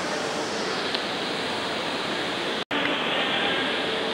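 Steady rushing background noise with faint voices mixed in, cut by a split-second drop to silence about two and a half seconds in.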